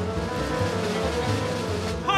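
Small classical instrumental ensemble playing the opening bars: held chords over a pulsing low figure, in an old live radio recording.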